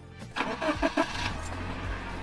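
Car engine-start sound effect: a few quick stuttering pulses about half a second in, then the engine running steadily.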